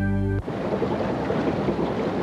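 A held music chord from a commercial's closing ends abruptly about half a second in. A steady rain sound follows, with a dense crackling texture.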